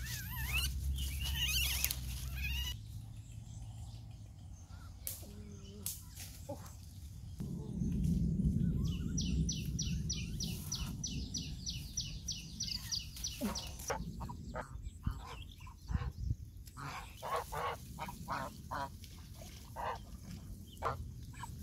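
Domestic geese honking over and over in the second half, a bit under two calls a second, after rustling footsteps through undergrowth. A fast, even run of high ticks, about three a second, sounds in the middle.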